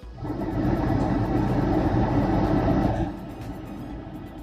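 A motor vehicle passing close by, a loud engine-and-road rumble that drops away sharply about three seconds in, over quiet background music.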